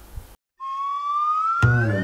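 A whistle-like tone glides slowly upward after a brief moment of silence. Background music comes in under it near the end, with a second rising glide.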